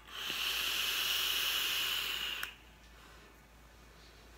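A long draw on an e-cigarette tube mod: a steady hiss of air and vapour pulled through the atomizer, lasting about two and a half seconds and cutting off suddenly.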